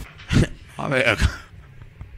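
A person's voice making two short vocal sounds, about half a second apart, in the first half.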